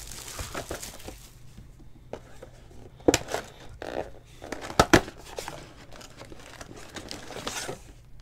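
Plastic wrapping on a trading-card box crinkling and rustling as the box is handled, with a few sharp knocks of the box, the loudest about three and five seconds in.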